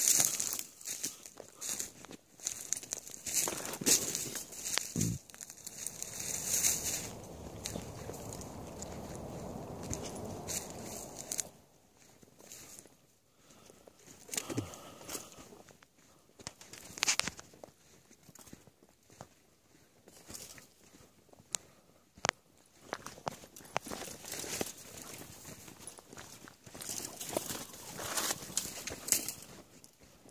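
Footsteps on a sandy dirt trail with dry brush and twigs rustling and crackling, irregular crunches throughout. A steadier rustling noise runs for several seconds in the middle and stops abruptly.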